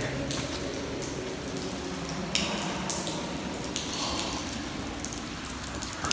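Water dripping and trickling inside a damp rock tunnel: a steady hiss of running water scattered with sharp drips.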